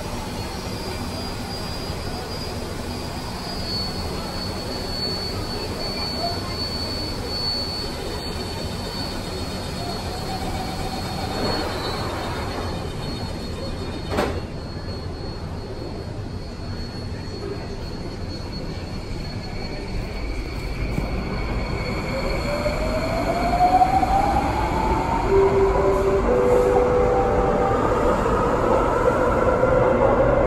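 Bombardier Movia C951 metro train pulling out of an underground station. A steady low hum, a single knock about halfway through, then from about two-thirds of the way in the electric traction whine rises in pitch as the train accelerates, growing louder.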